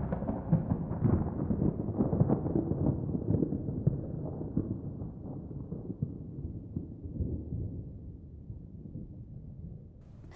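Sound-design rumble, the tail of a deep boom, fading slowly away, with scattered small clicks and crackles over it.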